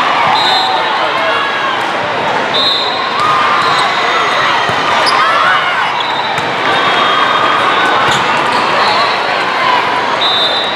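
Sounds of an indoor volleyball match in a large hall: sneakers squeaking on the sport-court floor and occasional sharp ball hits, over a steady din of many voices.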